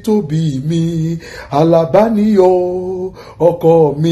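A man singing solo and unaccompanied, a chant-like song for fathers sung in long held notes that slide from one pitch to the next.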